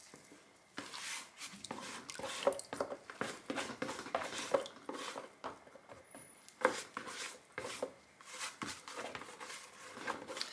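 A silicone spatula scraping and knocking around the inside of a plastic jug in a quick, irregular run of scrapes and clicks, starting about a second in, as the last of the lye solution is emptied into the oils.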